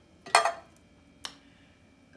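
A single short, sharp clink of kitchenware, a metal can or pot knocking against a hard surface, about a second into the quiet, with a fainter tick shortly before it.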